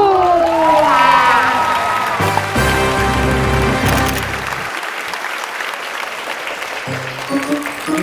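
The last held note of a sung jingle over backing music, the voice sliding down in pitch, then audience applause that fades away over several seconds.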